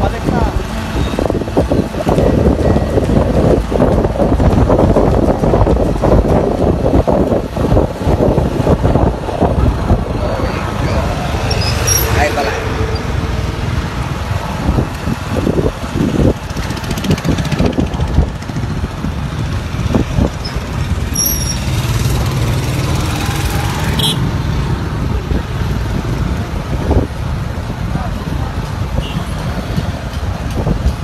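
Riding on a motorcycle: wind rushing over the microphone, with the bike's engine and street traffic underneath. Loudest for the first ten seconds or so, then somewhat steadier.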